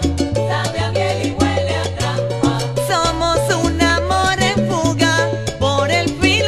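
Salsa band music: a full ensemble playing over a repeating bass line and steady percussion.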